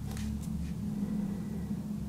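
Steady low hum of room background, with a couple of faint, brief hisses near the start.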